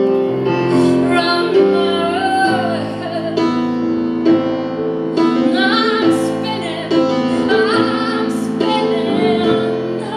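A woman singing live with piano accompaniment: held piano chords under her voice, which bends and wavers on the sustained notes.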